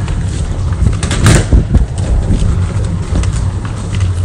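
Low rumbling handling noise from a phone microphone as the phone is carried while walking, with a louder burst of noise about a second in.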